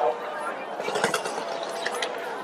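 Fireworks crackling and popping overhead, short sharp cracks over a steady hiss, with a crowd of voices chattering underneath.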